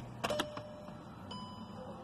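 Ignition switch of a 2012 VW Jetta turned on: a few sharp clicks from the key, then electronic beeps from the instrument cluster, the last a longer, higher tone about halfway through. The ignition is being switched on to let the fuel pump refill the injector rail before the first start of a rebuilt engine.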